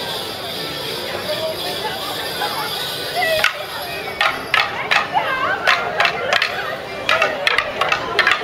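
Morris dancers' wooden sticks clacking against each other in a stick dance, a rapid run of sharp knocks beginning about three and a half seconds in, over music and crowd chatter.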